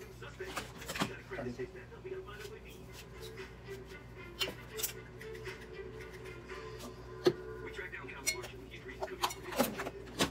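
Television playing in the room: faint speech and music, with a few sharp clicks scattered through.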